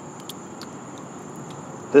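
Steady high-pitched insect trill, as from crickets, over a faint background hiss, with a couple of small ticks about a third and two thirds of a second in.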